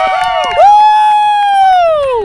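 Spectators yelling, then one long, loud, high-pitched cheering yell that starts about half a second in and is held, sliding down in pitch as it ends.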